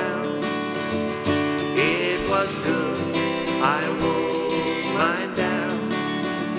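Acoustic guitar strumming chords at a steady pace in an instrumental passage of a folk-pop song, with a pitched melody line whose notes slide up about every second and a half.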